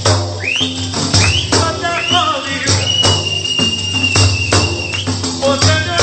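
Several large Albanian frame drums (def) played together in a steady, driving rhythm, their jingles ringing on each stroke. Above them a high melodic line rises in short glides and holds one long note through the middle.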